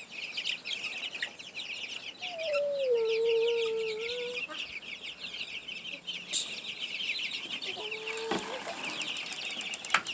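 A flock of young chicks peeping continuously, many short high cheeps overlapping. About two seconds in, a lower drawn-out tone lasts about two seconds and is the loudest sound here; a fainter one comes near the end.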